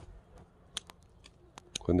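A few faint, sharp clicks scattered over about a second and a half, in a lull between a man's words. Speech starts again near the end.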